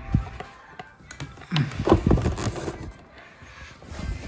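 A phone camera being handled and moved about: a thump at the start and a few sharp clicks about a second in. In the middle comes about a second of a wordless, pitched vocal sound that bends up and down.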